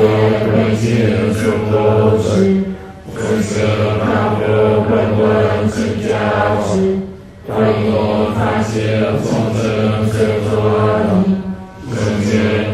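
Buddhist mantra chanted in a low, deep voice, the same phrase repeated over and over, each round about four seconds long with a brief pause for breath between.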